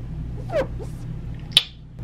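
A short falling whimper-like voice sound, then a single sharp click, over a steady low hum.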